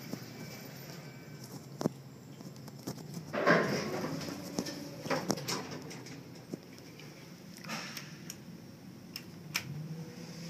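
Elevator cab sounds: a steady low hum with scattered clicks and knocks, and a louder sliding rush about three and a half seconds in as the car doors open at the floor.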